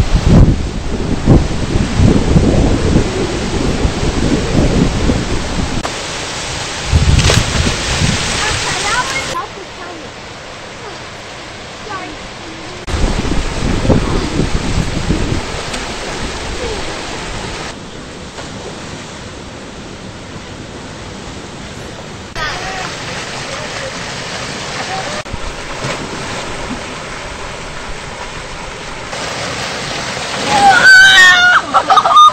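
Rushing river water from rapids and a waterfall, with wind buffeting the microphone in low gusts during the first several seconds. The level changes abruptly several times.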